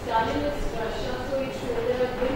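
A person speaking in a room, indistinct.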